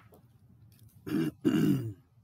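A man clearing his throat in two quick bursts about a second in, the second one voiced and falling in pitch.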